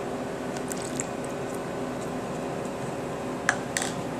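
Almond liqueur poured from a plastic cup into a bowl of milk-soaked oats, a soft wet pour over a steady background hum, with two sharp clicks near the end.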